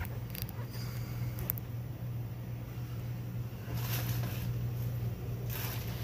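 Clear plastic produce bag rustling in two short bursts, with a few light clicks early on, over a steady low hum.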